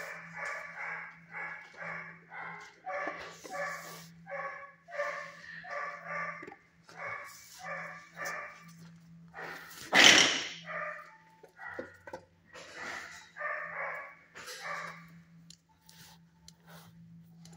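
A dog in a shelter kennel barking over and over, about two barks a second, with a short break before a single loud, sharp noise about ten seconds in. A steady low hum runs underneath.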